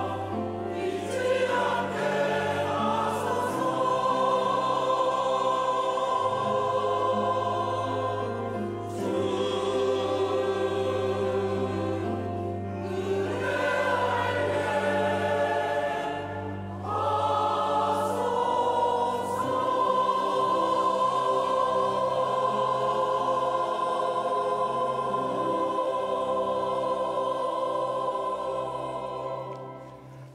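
Mixed church choir singing the closing phrases of a Korean hymn anthem in held chords, ending on one long sustained final chord that fades out near the end.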